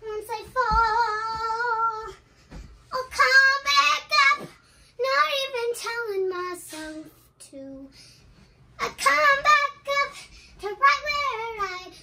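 A young girl singing wordless, wavering notes in several phrases with short breaks between them, starting with one long held note.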